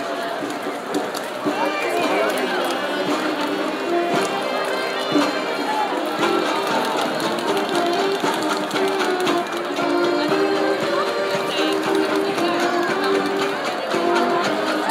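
Mummers string band, an ensemble of saxophones, banjos and accordions, playing a tune with a steady, held melody line.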